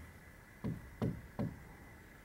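A dry-erase marker knocking against a whiteboard three times, about 0.4 s apart, as digits are written.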